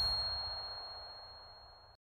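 A single high, pure ding sound effect ringing on steadily over the fading tail of the background music, then stopping suddenly at the end.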